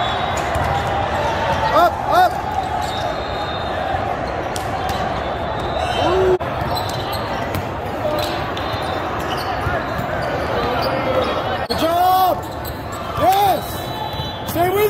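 Indoor volleyball game in a large, echoing hall: a steady din of crowd and other courts, with the sharp smacks of the ball being hit and a few short shouted calls from players, about two seconds in, around six seconds and twice near the end.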